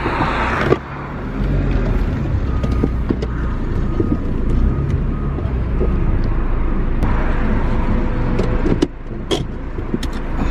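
Car engine running at low speed while reversing, heard from inside the cabin as a steady low rumble, with a brief rush of noise at the very start and a few sharp clicks near the end.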